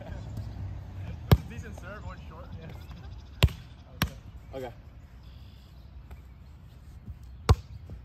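A volleyball being struck by hand: four sharp slaps, the last and loudest near the end being the serve.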